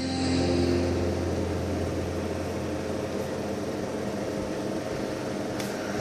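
A steady low hum with an even hiss over it. A few held tones fade out about a second in.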